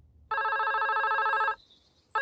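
Cartoon telephone ringing: one fast-trilling ring about a second long, then a pause before the next ring.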